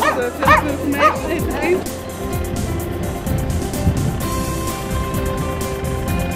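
A dog barking and yipping about four times in quick succession in the first two seconds. Background music then takes over, with steady held tones and a low beat.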